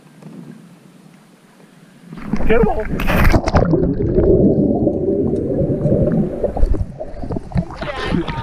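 A splash about two seconds in as the camera goes into the lake water, then muffled underwater churning and bubbling for about four seconds, with sharper splashing as it breaks the surface near the end.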